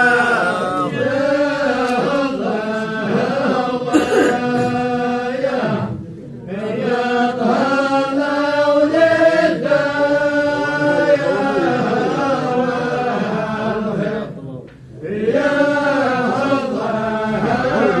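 Voices chanting a slow, held melody, with two short breaks, about six seconds in and again near fifteen seconds.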